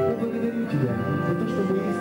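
A man singing a worship song into a handheld microphone over an instrumental accompaniment with guitar and long held tones.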